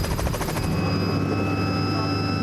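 Robinson R66 turbine helicopter lifting off, its rotor blades beating rapidly. Under a second in, the sound turns to a steady turbine whine over a low drone, as heard inside the cabin.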